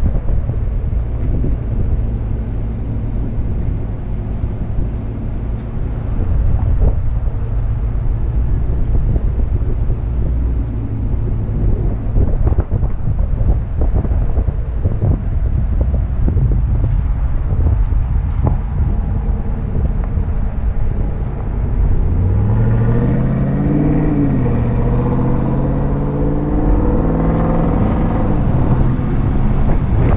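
Truck driving over a sandy track: a steady low rumble of engine and tyres with wind on the microphone and scattered knocks from bumps. About two-thirds of the way through, the engine accelerates, its pitch rising, dropping back and climbing again.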